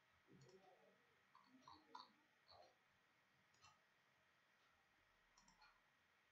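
Near silence with a few scattered faint clicks, most of them in the first half.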